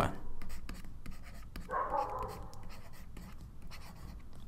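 Handwriting strokes: a pen tip scratching and tapping on a writing surface in short, quick strokes.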